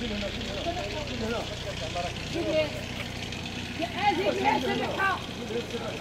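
Several men talking in the street, their voices overlapping and loudest about four seconds in, over a steady low hum like an idling engine.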